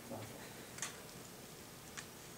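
Quiet room with two faint, sharp clicks about a second apart.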